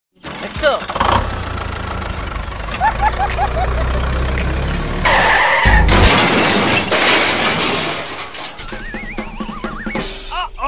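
Cartoon sound effects over background music: a steady low engine rumble, then a crash about five seconds in, and a wobbling rising whistle near the end.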